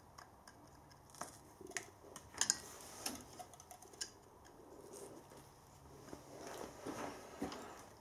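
Faint, scattered metallic clicks and taps from the gib screws of a lathe's cross slide being nipped up to lock the slide.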